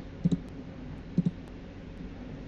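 Clicks from operating a computer: two quick double clicks, about a second apart, over a steady low room background.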